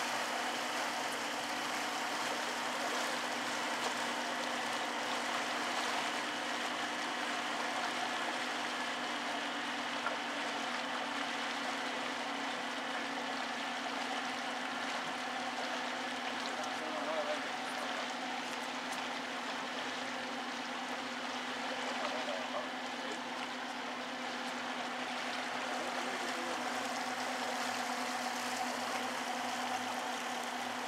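A boat's motor running steadily while cruising, with water rushing and splashing along the hull.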